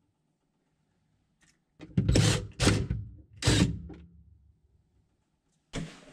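Three short clunks from work on the plastic panels inside a refrigerator's freezer compartment, starting about two seconds in and less than a second apart. The last one trails off over about a second.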